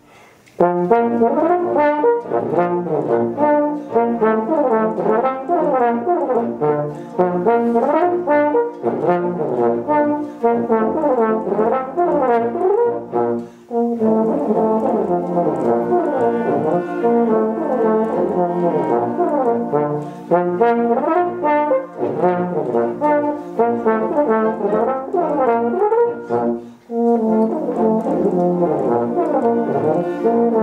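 Euphonium solo playing quick running passages that climb and fall, over a concert band accompaniment. The music breaks off briefly right at the start and pauses for a moment twice more between phrases.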